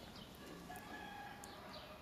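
Faint bird calls over low background hiss: a short held call about a second in and a few brief high chirps.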